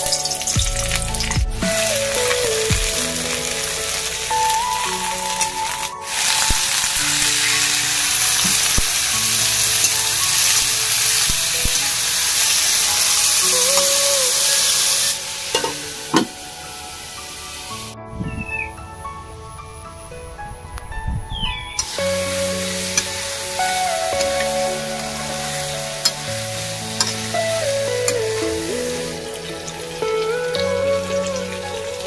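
Food sizzling as it fries in hot oil in a kadai. The sizzle is loud for about the first fifteen seconds, then falls much quieter once a steel lid is on the pan. A background melody plays throughout.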